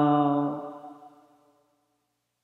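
A man's long, drawn-out hesitation sound, 'ah... uh', held at one steady pitch and fading out a little over a second in.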